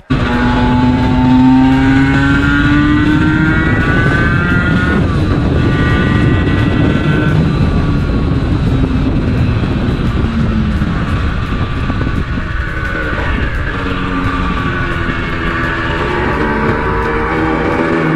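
Two-stroke Aprilia sport motorcycle engine heard from on board while riding, revving hard with its pitch climbing and then dropping back at each upshift as it accelerates through the gears.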